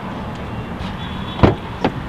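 Two sharp clicks about a second and a half in, a car door handle and latch being worked, over a steady outdoor background hum.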